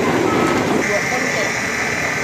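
Busy outdoor background noise, then a steady high-pitched tone that comes in a little under a second in and holds without a break.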